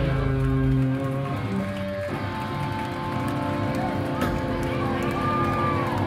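A band's amplified electric guitars ringing with sustained notes and amp drone between or at the tail of a song. The heavy bass drops away about a second in, and a wavering high tone bends up and down near the end.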